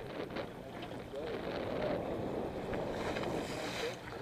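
Steady wind and sea noise on the deck of a sportfishing boat, with a low hum underneath and faint voices; a hiss swells near the end.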